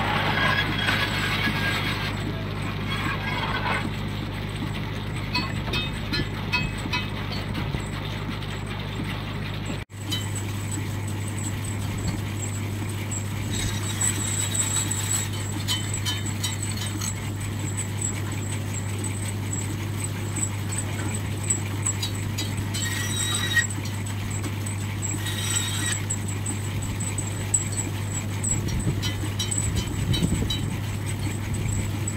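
Ruston Proctor portable steam engine running steadily, driving a cast-iron bandsaw through a long flat belt: a constant low hum with light ticks throughout, broken by a brief sudden dropout about ten seconds in.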